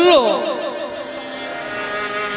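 A held harmonium chord sounds as a steady drone, and a man's spoken phrase falls away over it within the first half second.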